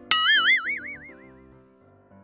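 A cartoon 'boing' sound effect: a sudden twangy tone whose pitch wobbles up and down as it dies away over about a second and a half, over soft background music.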